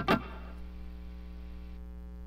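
Steady electrical hum and buzz with hiss from a Line 6 Helix guitar rig running a Fulltone GT500 pedal through its effects loop, heard while the loop's trails setting is being compared for noise. Near the end the high hiss drops as the trails setting is switched.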